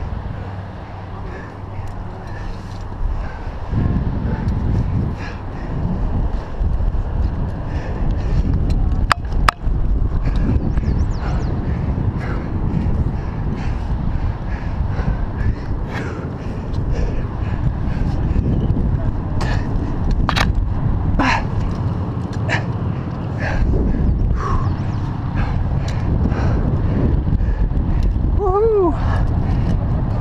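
Rumbling, scuffing noise of a head-mounted camera and a climber's body and shoes rubbing against granite while jamming up a crack, with scattered sharp clicks of climbing gear. A voice comes in near the end.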